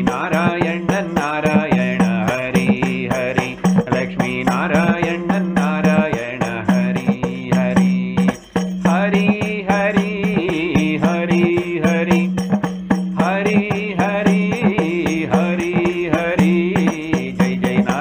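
A man singing a devotional chant of divine names (nama sankirtanam) over a steady low drone, with regular beats of a hand-held percussion instrument; the singing breaks off briefly about halfway and resumes.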